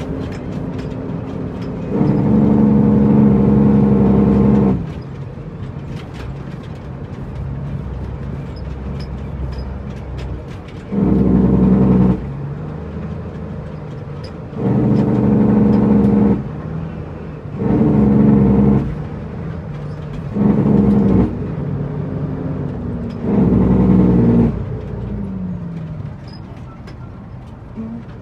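Truck air horn blown six times in long blasts of one to three seconds, each starting and stopping abruptly at the same pitch. Between blasts, the truck's diesel engine runs steadily.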